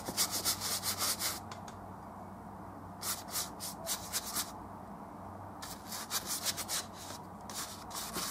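Paintbrush scrubbing oil paint onto stretched canvas: spells of quick, scratchy back-and-forth strokes, four bursts with short pauses between them.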